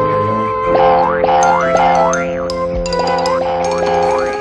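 Cartoon boing sound effects, a quick rising glide repeated about twice a second, over background music with held notes.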